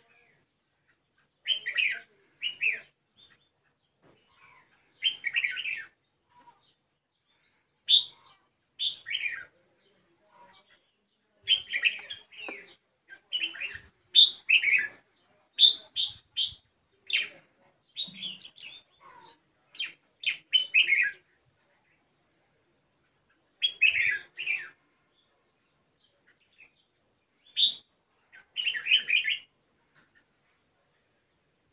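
Red-whiskered bulbul singing: short, bright phrases of chirping notes, repeated every second or two, with two longer lulls in the second half.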